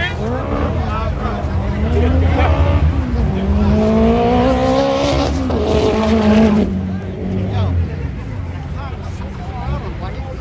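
A car engine revving hard, its pitch climbing over a few seconds, dipping once and then cutting off about seven seconds in. The tyres are spinning in a cloud of smoke, and crowd voices are heard around it.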